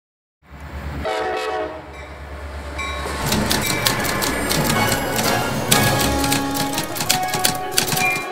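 A passenger train passing close by: a low rumble, a short horn blast about a second in, then the clatter and clacking of the cars going by. Background music comes in partway through and runs under the train noise.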